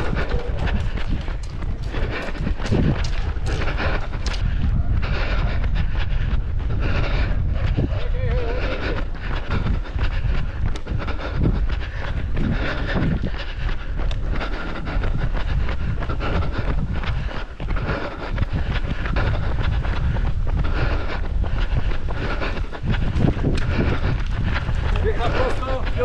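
Wind buffeting the microphone of a camera carried by a runner during a road race, with the runner's footfalls as short knocks throughout. Brief voices come in near the end.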